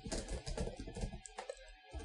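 Computer keyboard being typed on: a quick run of key clicks that dies away about a second and a half in.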